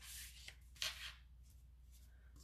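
Cardstock being handled and slid across a wooden tabletop: two faint, brief paper swishes about a second apart.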